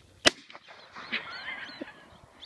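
A single gunshot, a sharp bang fired as a flushed bird flies off, followed about a second later by a wavering honk-like call.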